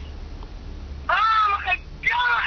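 A single high-pitched, meow-like cry of about half a second, about a second in, heard through a phone's speaker.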